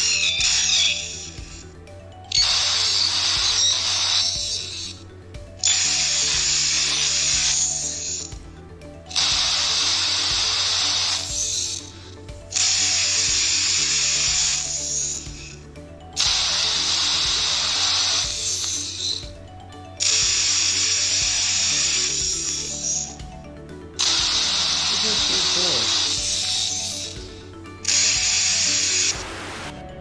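Two phones running the Talking Carl app repeat each other's sound back and forth in a loop. Each repeat is a harsh, buzzy, high-pitched burst lasting two to three seconds, and a new one comes about every three and a half seconds. A steady low tune plays underneath.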